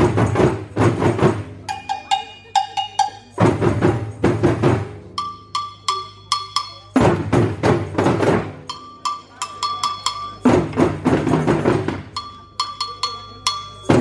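A school percussion group playing call and response: four bursts of hand-drum playing on djembes, each about a second and a half long, alternate with short rhythmic patterns of sharp, pitched wooden clicks.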